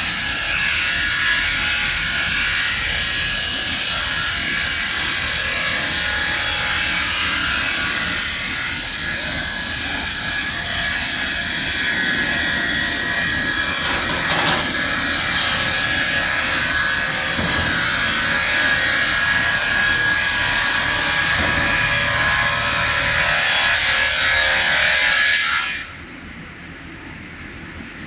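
Industrial multi-blade rip saws sawing logs into square timber: a loud, continuous high whine over dense sawing noise. The level falls away sharply just before the end.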